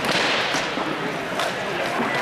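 A few sharp cracks of rattan weapons striking shields and armour in an armoured combat melee, over a background of voices.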